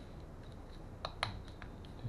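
Small plastic clicks from handling the Bluetooth helmet headset's control unit and its volume rocker, with two sharper clicks in quick succession about a second in.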